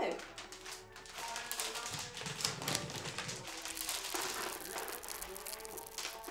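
A wrapped gift box being handled and opened: a dense run of small crackles and taps of paper and cardboard for several seconds.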